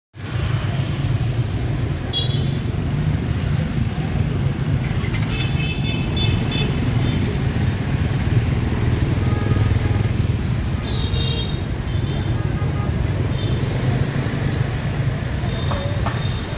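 Street traffic dominated by motorbikes: a steady low rumble of engines going by, with a few short high-pitched tones at intervals.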